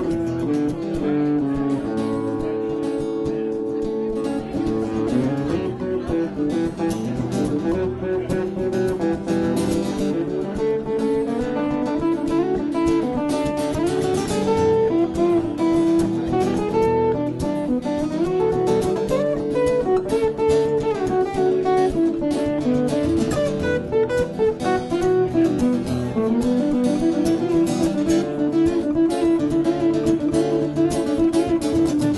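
Two acoustic guitars, one of them a Takamine, playing an instrumental break in a country song: a single-note melody line with bent notes moves over the chords.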